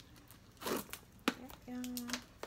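Pen tip slitting the tape seal on a small cardboard box: one short scratchy tear about two-thirds of a second in, then a sharp click. A brief hummed voice sound near the end.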